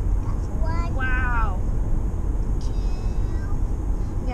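Steady low road and engine rumble inside a moving car's cabin, with a young child's short high-pitched vocal sound about a second in and a fainter one near the end.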